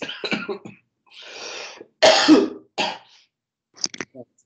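A man coughing several times, with a breathy throat-clearing sound about a second in and the loudest cough about two seconds in, heard over a video-call microphone.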